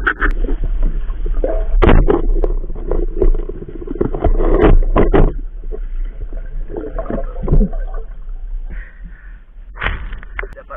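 Water churning and gurgling around a camera held at or just under a river's surface, with irregular knocks and splashes as a spearfisher moves through the water. It is loudest a couple of seconds in and settles after about five seconds.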